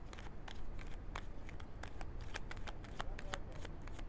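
A deck of tarot cards being shuffled by hand: a run of quick, irregular soft clicks and riffles.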